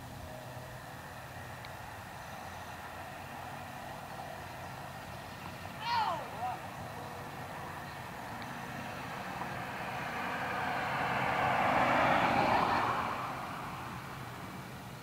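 A vehicle passes by, its noise swelling to a peak about twelve seconds in and then fading. About six seconds in there is a brief distant shout.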